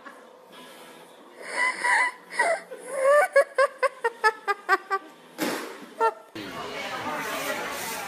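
High-pitched laughing: two drawn-out laughs, then a quick run of short 'ha' bursts at about five a second, ending in a breathy gasp. Near the end it gives way to room chatter.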